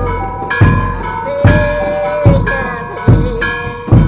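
Procession music: a big drum beats steadily about every 0.8 s, five strokes here, under a melody of held notes played by melodic instruments.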